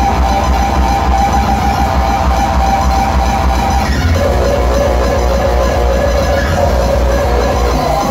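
Loud uptempo hardcore electronic music over a venue sound system: a steady kick drum beat under a held synth lead, which shifts to a lower note about halfway through.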